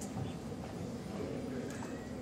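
Steady room murmur of a large hall with a few faint clicks, one just after the start and another near the end.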